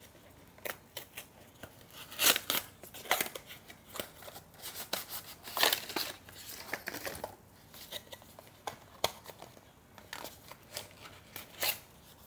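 Cardboard product box being opened and unpacked by hand: scattered scrapes, rustles and light clicks of card and plastic, with louder strokes about two, three and six seconds in.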